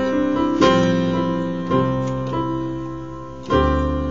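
Piano-voiced digital keyboard playing sustained chords. A new chord is struck about half a second in and another just under two seconds in, each ringing and slowly fading. A chord with a deep bass note comes in near the end.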